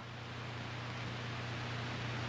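Steady hiss with a low, constant hum: the background noise of an old film soundtrack, with no other sound on it.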